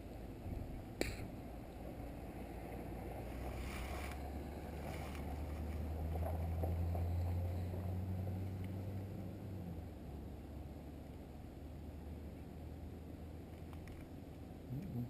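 A distant engine drone with a low steady pitch that grows to its loudest about seven seconds in and then fades away, over open-air background noise. A single sharp click about a second in.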